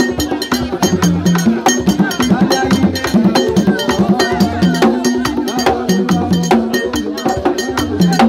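Live Haitian Vodou ceremonial music: drums play a repeating pitched pattern under a steady fast click of a struck percussion instrument, about four to five strikes a second, with voices mixed in.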